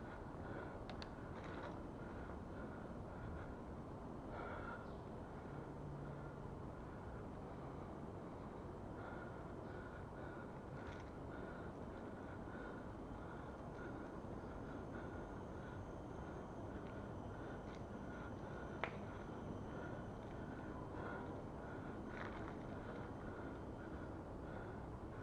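Steady rolling and wind noise of a bicycle ride along a concrete forest path, with a faint high blip repeating about twice a second and one sharp click about two-thirds of the way through.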